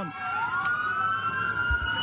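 Police patrol car siren wailing, its pitch slowly rising as the car comes back down the street. A brief low thump near the end.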